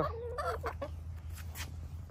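Backyard hens clucking: a few short, low clucks about half a second in.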